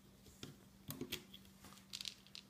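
A few faint, short clicks as rubber loom bands are stretched and set onto the pegs of a plastic loom, over a faint steady hum.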